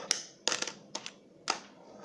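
Fingerboard clacking on a tabletop: a handful of sharp, separate clicks as the little deck and its wheels are popped and slapped down during trick attempts.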